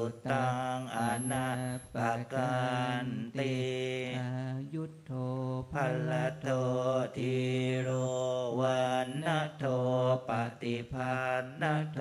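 Buddhist monks chanting Pali blessing verses (anumodanā) in unison, holding one steady pitch with short breaks between phrases.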